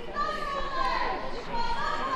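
A woman shouting at the top of her voice in high-pitched, strained cries, the words not clear.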